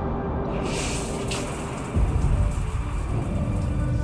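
Steady rain hiss with a deep rumble of thunder setting in about halfway through, the loudest part, over a held low music note in the first half.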